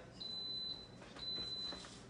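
Electronic timer beeps from a double Belgian waffle iron: two high, steady half-second beeps about a second apart, the alert that the set three-minute cooking time is up.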